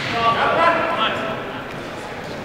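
Background voices of spectators talking in a large gymnasium, heard mostly in the first second.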